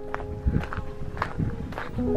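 Footsteps on a gravel path, a handful of uneven steps.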